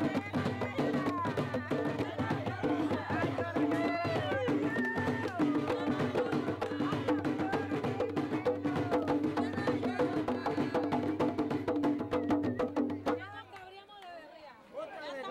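Panamanian tamborito played live: drums, one of them struck with sticks, beating a fast rhythm under voices singing. The music stops suddenly about a second before the end.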